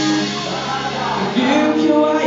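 Live rock band playing, strummed guitar with singing; a new chord comes in about one and a half seconds in.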